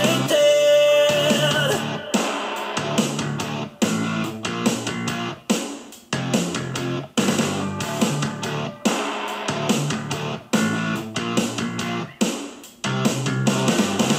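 Hama Tube 3.0 Bluetooth speaker playing a guitar-driven music track, with sharp, stop-start chord hits.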